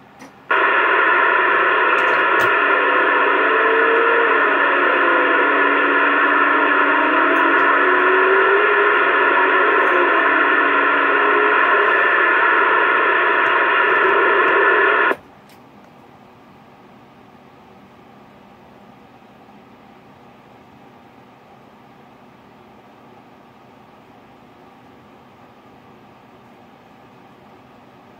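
A Uniden CB radio's speaker gives out loud, steady static with steady tones through it, with a faint warbling pitch underneath. After about fifteen seconds it cuts off suddenly, leaving a low hiss.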